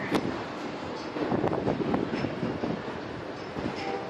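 Steady rumbling outdoor noise with a few faint knocks, the ambient sound on a container gantry crane high above a port terminal.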